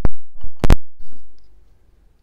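A hammer striking the metal case of a 3.5-inch Seagate hard drive over its spindle motor several times in quick succession in the first second, each hit a sharp metallic knock. The blows are meant to wreck the motor and platters so the drive can no longer spin up.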